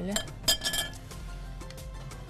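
A short, bright clink of hard objects with a brief ring about half a second in, over faint background music.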